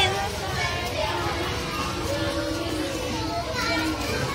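A group of young children's voices chattering and calling out over one another.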